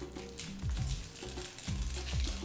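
Background music with held low notes and a beat of low thumps.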